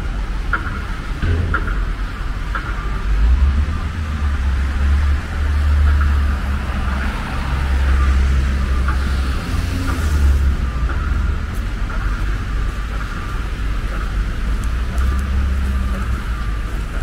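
City road traffic on a wet street: cars and heavier vehicles passing with a steady low rumble, and a swell of tyre hiss about two-thirds of the way through. Faint, regular light ticks come about once a second.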